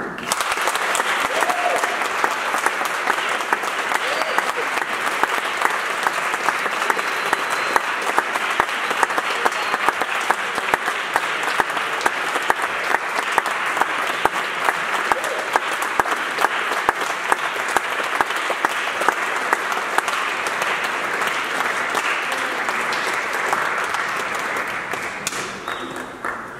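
Audience applauding, breaking out at once and holding steady before fading out near the end.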